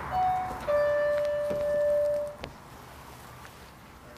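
Electronic shop-door entry chime sounding two notes: a short higher note, then a lower note held for about a second and a half. A single click follows shortly after the chime ends.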